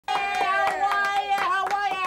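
A high-pitched voice holds a long note that slowly falls, over a rapid, irregular clatter of sharp clicks.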